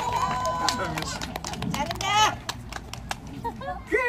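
Performers' voices calling out on stage, with one loud shout about two seconds in and a few short sharp taps.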